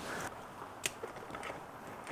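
Quiet handling of heavy jumper cables and their clamps in a plastic carrying case: faint rustling, with one sharp click a little before the middle.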